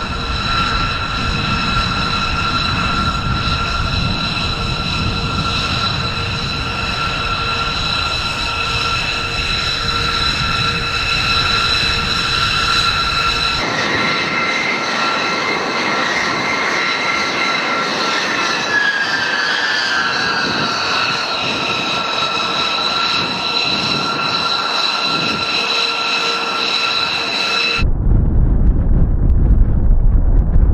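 Jet engines of a B-2 Spirit stealth bomber (four GE F118 turbofans) running at taxi power: a steady high whine over a rush of exhaust, with the low rush dropping out at a cut about halfway through and a short falling tone a little later. A few seconds before the end it switches abruptly to a louder, deep roar as the bomber goes to full power for takeoff.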